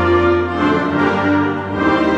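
A concert wind band playing live, clarinets among the winds, with held notes moving in a slow line over a steady low bass note.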